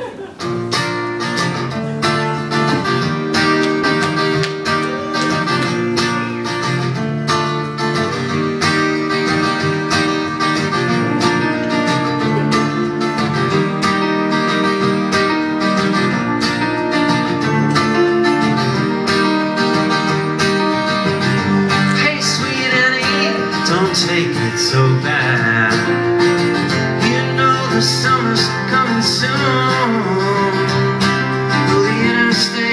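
Live acoustic guitar and piano playing a mid-tempo song intro, the guitar strummed in a steady rhythm. A wavering higher melody line comes in about two-thirds of the way through.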